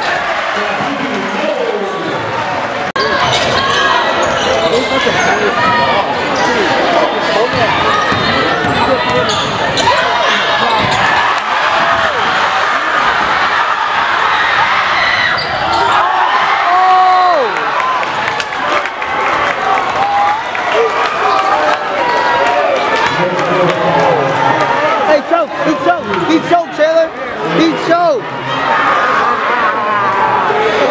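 Live high school basketball game in a gym: a ball dribbling on the hardwood court, sneakers squeaking, and spectators talking and shouting, with the echo of a large hall.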